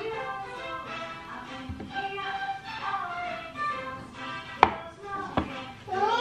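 Background music with held notes over a small knife cutting a banana into pieces that drop into a plastic bowl; two sharp taps come near the end.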